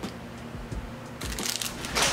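Thin clear plastic packaging bag crinkling as a bagged beaded bracelet is handled and set down, starting a little over a second in and growing louder.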